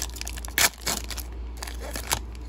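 Silvery foil trading-card pack wrapper crinkling and tearing as it is ripped open by hand: a run of sharp crackles, loudest about half a second in and again just before the one-second mark.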